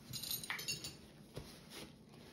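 Light clicks and clinks of small objects being handled: a quick cluster in the first second, then a single sharp tick about a second and a half in.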